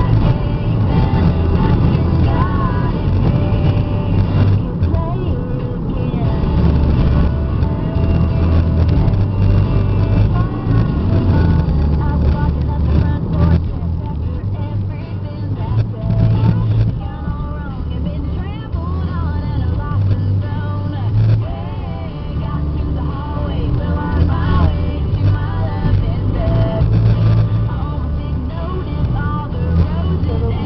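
Steady road and engine rumble heard from inside a car's cabin while it cruises at motorway speed, with faint voices or music under it.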